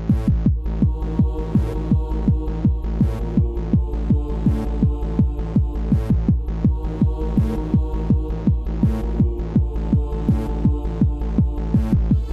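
Hard trance / acid techno track: a steady kick drum a little over twice a second under a held synth pad and deep bass drone, with a cymbal hiss about every second and a half.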